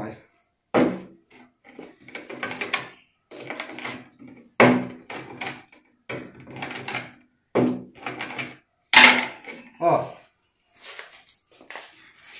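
A steel screwdriver shaft rubbed in short, irregular strokes over coarse 36-grit cloth sandpaper freshly glued onto a wooden sanding drum, a series of scrapes with pauses between them, pressing the glued sandpaper down even.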